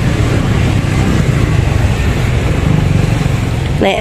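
Steady low rumble of road traffic, with vehicle engines running continuously and no single event standing out.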